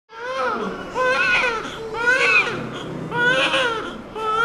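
Newborn baby crying: about four wailing cries, each rising and then falling in pitch, with short pauses between them.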